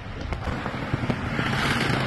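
Low rumble and rushing noise of an inflatable tube riding up a water-slide conveyor belt, with a hiss swelling in the second half.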